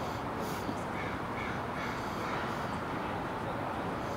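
A bird calls three or four times in quick succession, short calls about half a second apart, over a steady hiss of outdoor background noise.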